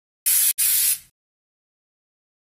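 Two short, loud bursts of hiss, strongest high up, split by a brief gap about half a second in. The second burst fades out quickly about a second in.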